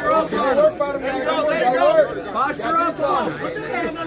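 Several voices talking and calling out at once: chatter from a crowd of spectators.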